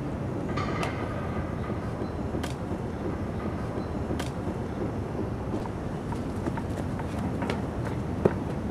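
Steady outdoor background rumble, with a few faint clicks.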